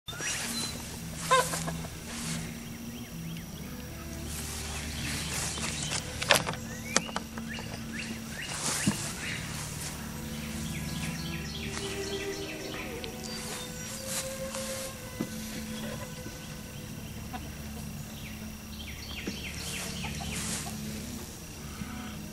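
Outdoor ambience: birds calling now and then over a steady low hum, with a few brief sharp clicks.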